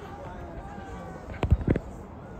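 Faint voices of people talking at a distance, then a quick cluster of four or five low thumps about a second and a half in.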